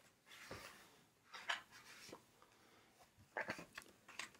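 Faint rustles and taps of a hardcover picture book being handled and its page turned: a few short sounds, most of them in a small cluster near the end.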